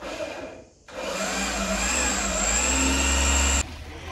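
Handheld electric power tool motor running steadily for a few seconds, starting about a second in and cutting off suddenly near the end.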